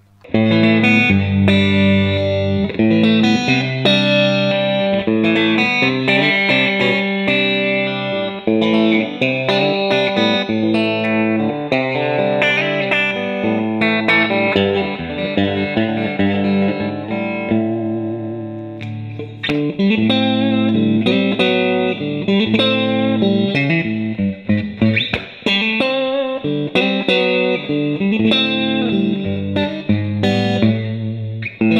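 Fender American Standard Stratocaster (E-series) electric guitar played on a clean tone through a Fender Blues Junior combo amp: steady chords and picked single notes, easing off briefly about two-thirds of the way through.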